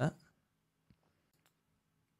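A man's voice ends a word at the start, then near silence in a small room, broken by a few very faint clicks around the middle.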